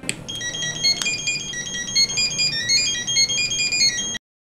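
Mobile phone ringing: a fast, high electronic ringtone melody of short stepping notes. A single sharp click sounds about a second in.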